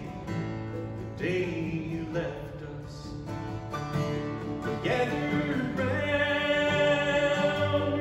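Live acoustic country-gospel music: acoustic guitars and a mandolin playing under voices singing, with a long held sung note in the second half.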